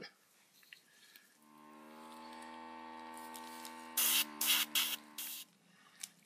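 A small airbrush compressor motor starts about a second and a half in and hums steadily. Near the end come four short hissing blasts of air from the airbrush as it blows wet alcohol ink across the tile, and then the motor stops.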